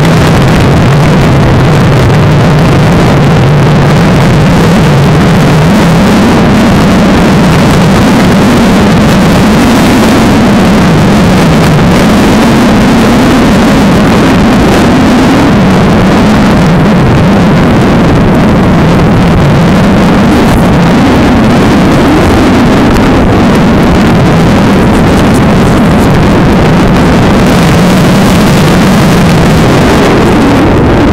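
A motor vehicle's engine running at speed, its hum wavering slowly up and down, under a loud, steady rushing of wind and road noise.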